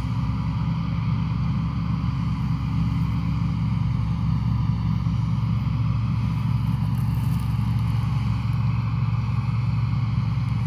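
A low, steady engine drone that holds an even pitch.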